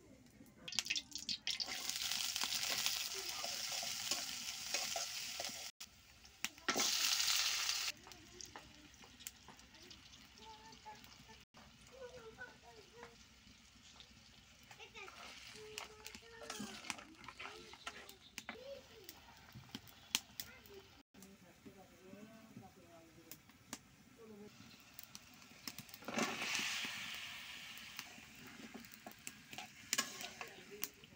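Pangas fish pieces frying in hot oil in a wok, sizzling loudly for several seconds. The sizzle dies down to a lower crackle while a spatula stirs, then comes back loud for a couple of seconds near the end.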